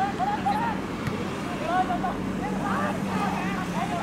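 Soccer players shouting short calls to each other across the pitch, several raised voices coming one after another, over a steady low hum.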